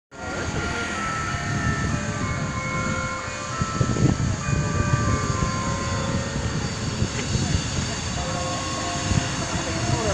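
City street ambience: steady traffic noise with a fluctuating low rumble, and voices of passers-by in the background.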